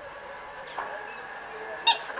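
Two short bird calls, a faint one early and a much louder, sharp one near the end, over a faint steady high tone.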